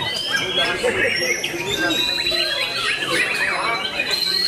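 White-rumped shama (murai batu) singing in contest form: a fast, varied string of whistles, chips and slurred notes, with a long high whistle in the second half, over the chatter of people.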